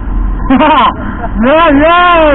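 A man's voice calling out in drawn-out cries, the pitch rising and falling, with the low steady rush of wind and motorcycle noise on the move beneath it.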